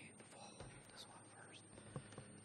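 Faint, low conversation between two people picked up away from the microphone, with a single sharp click near the end.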